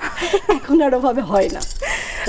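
A woman talking and laughing, with a light metallic jingle near the start and again near the end.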